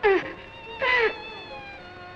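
A woman's anguished crying: two short, high wails, each falling in pitch, the second about three-quarters of a second after the first.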